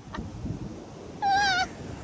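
A person's short, high-pitched squeal, about half a second long, a little past halfway through, over low rustling noise.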